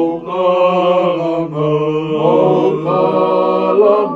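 A group of men singing a Tongan song together in long, held notes, accompanied by an acoustic guitar.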